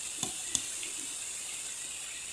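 Sliced onions and spices frying in hot oil in a steel kadai: a steady sizzle, with a couple of faint ticks in the first half-second.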